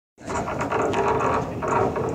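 Locomotive moving slowly during shunting: a steady, dense mechanical rattling and clicking of running gear over a steady hum, starting abruptly just after the beginning.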